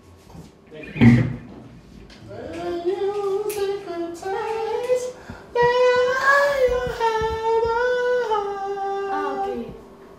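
A single voice singing a slow melody without words, in long held notes that step up and down. About a second in there is one loud thump.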